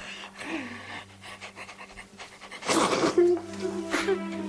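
A person crying, with ragged, uneven breaths and a louder breathy sob near three seconds in, over soft sustained background music; a melody comes in just after the sob.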